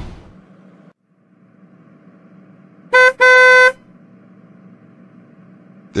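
A car horn honks twice, a short toot then a longer one, over a low steady traffic hum, the sound of cars stuck in a traffic jam.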